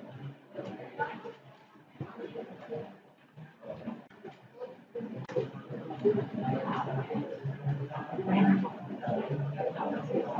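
Indistinct speech, quiet in the first half and louder from about halfway through.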